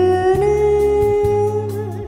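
A woman singing into a microphone, holding one long note over a recorded backing track with a steady bass beat; the note breaks off just before the end.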